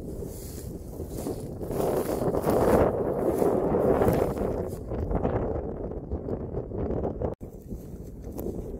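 Wind buffeting the microphone in uneven gusts, with a brief break just before the end.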